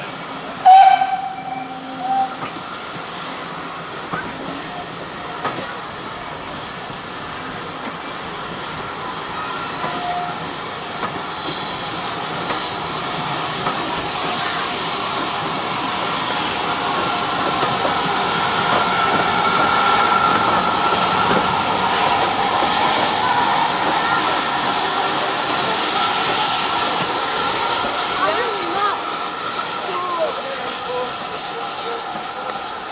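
Steam locomotive hissing, the steam hiss building gradually and staying loud through the second half. A brief whistle note sounds about a second in.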